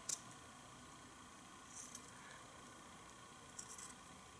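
Scissors cutting through felt in a few faint snips, about two seconds apart, over quiet room tone.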